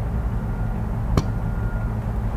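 Steady low rumble of a lit forge's burner, with one sharp metal click about a second in.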